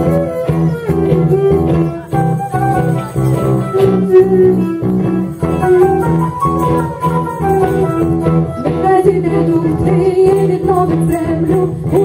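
A song performed live, with guitars playing a steady rhythm and singing.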